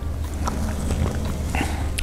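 Steady low hum of room noise, with faint small sounds as someone sips from a cocktail glass and breathes in near the end.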